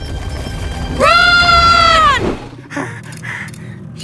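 A cartoon character's loud, high yell, held for about a second starting a second in, its pitch rising at the start and dropping off at the end, over background music.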